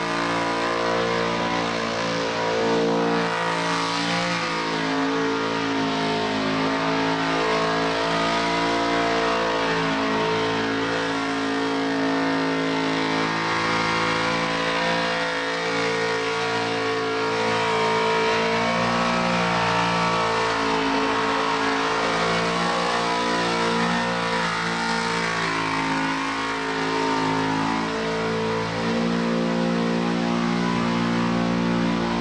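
Supercharged V8 held at high revs through a burnout, with its pitch holding for a few seconds at a time and then stepping up and down as the throttle is worked. The spinning rear tyres hiss underneath the engine.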